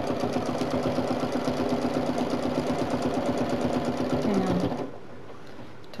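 Domestic sewing machine stitching fast and steadily while free-motion quilting with a ruler foot, the needle clattering in a rapid even rhythm over the motor's hum. The motor slows just after four seconds in and stops a little later.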